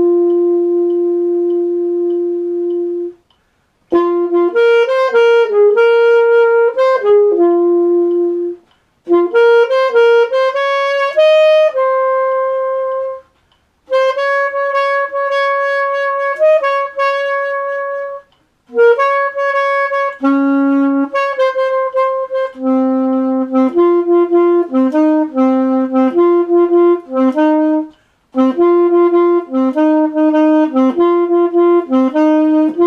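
Unaccompanied alto saxophone playing a jazz ballad melody: long held notes mixed with quicker runs, in phrases split by short pauses for breath.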